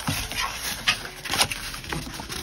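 Cardstock being bent and refolded by hand, rustling and crackling, with several sharp crinkles as the scored creases give.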